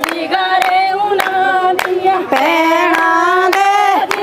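Women singing a Punjabi giddha boli together in chorus with long held notes, over steady rhythmic hand claps a little under two a second.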